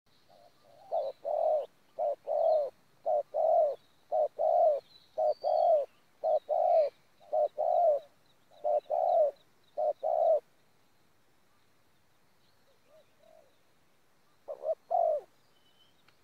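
Spotted dove cooing: a run of paired coos, each a short note followed by a longer one, about one pair a second, stopping about ten seconds in. After a pause, one more pair comes near the end.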